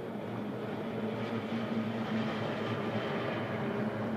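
The two-stroke outboard motors of six racing boats are running together at full throttle as the boats speed toward the flying-start line. Together they make a steady drone that grows slightly louder.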